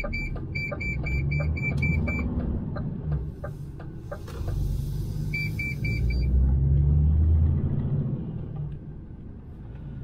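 Cab of a DAF XF 530 truck on the move: the PACCAR MX-13 six-cylinder diesel and road noise run steadily underneath, swelling around seven seconds in. Over them a rapid series of short, high electronic beeps, about four a second, sounds for the first two seconds and briefly again around five and a half seconds.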